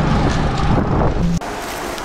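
Wind buffeting the microphone outdoors: a loud, steady low rumble that cuts off abruptly about a second and a half in, leaving quieter outdoor background.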